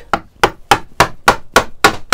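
Mallet striking a chisel, about seven sharp blows at three or four a second, chopping chunks of waste wood out of a ukulele body blank down to saw-cut stop cuts.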